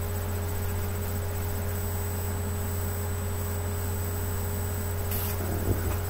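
Steady low electrical hum with a faint thin whine above it. About five seconds in there is a brief rustle and a small knock as a paper map is lowered.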